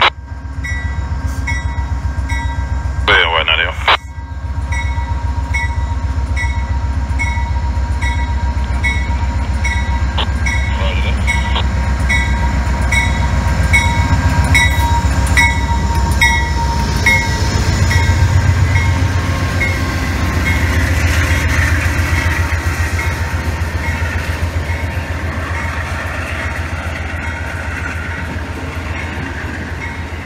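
GE P42DC diesel locomotive with a V16 engine pulling away and passing close by, its engine rumbling low and loudest as it goes past a little over halfway through. Its bell rings about twice a second until about two-thirds of the way in, and then the passenger cars roll by.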